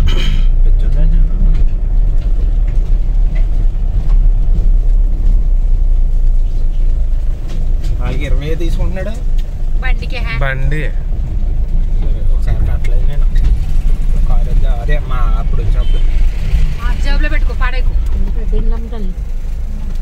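Steady low rumble of a car driving slowly over a bridge deck and rough dirt road, heard from inside the cabin.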